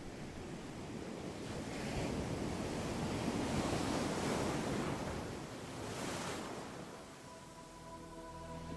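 Ocean surf breaking and washing up a beach: a steady rush of water that swells to its loudest about halfway through, with a brief surge of hiss a little later, then ebbs near the end.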